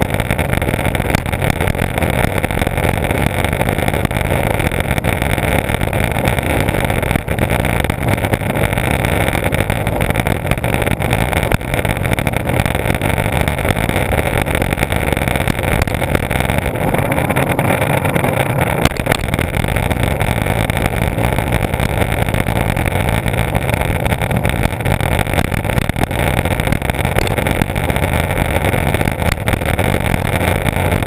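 Skateboard wheels rolling on asphalt, with wind buffeting an action camera mounted on the board: a loud, steady rushing noise with no letup.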